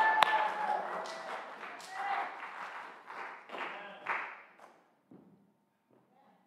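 Applause in a church: a few loud, close hand claps at the start over the congregation's clapping, which dies away by about five seconds.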